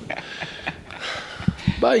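Men laughing and talking briefly, with a couple of sharp low thumps about one and a half seconds in.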